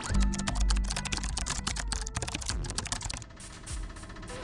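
Rapid computer-keyboard typing clicks, thinning out near the end, over background music.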